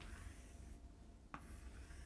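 Faint scratching of chalk on a chalkboard as circles are drawn around letters, with one light tap of the chalk about a second and a half in.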